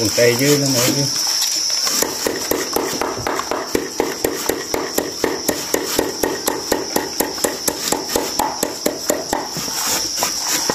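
Bare hands kneading and squeezing raw meat with marinade in an aluminium pot: a quick, regular run of short wet squelches and slaps, several a second.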